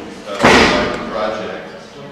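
A single loud slam about half a second in, echoing and fading in the large hall, with a man talking before and after it.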